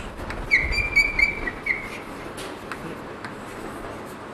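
Chalk squeaking on a blackboard during writing: a high, steady squeal starts about half a second in and lasts just over a second with brief breaks, followed by a few faint taps and scratches of chalk strokes.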